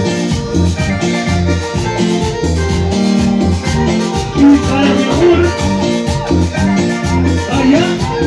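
Live cumbia band playing a dance number, with a repeating bass line under a steady percussion beat.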